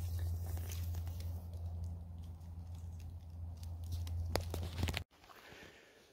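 Faint rustling and light crackling of dry leaf litter over a steady low rumble, all cutting off abruptly about five seconds in.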